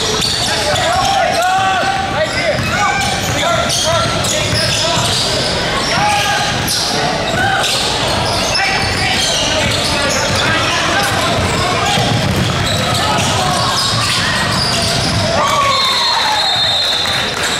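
Live basketball play in a large gym: the ball bouncing on the hardwood court amid scattered thuds, with players and spectators shouting and calling out over a steady crowd din.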